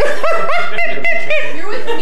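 A woman laughing: a quick run of about six high-pitched bursts over the first second and a half, trailing off into softer laughing.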